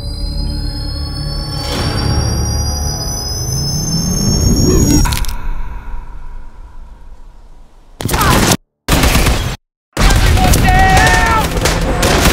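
Trailer sound design: a rising tone and rumble build to a boom about five seconds in, then fade away. Loud gunfire breaks in suddenly about eight seconds in, cut twice by short dead silences.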